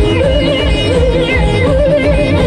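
Live Timli band music: an electronic keyboard plays a wavering lead melody with heavy vibrato over a steady, driving beat from an electronic drum pad.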